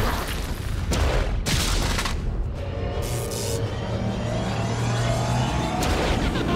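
Action-cartoon soundtrack: dramatic background music with an explosion boom at the start and more blast and impact effects over it.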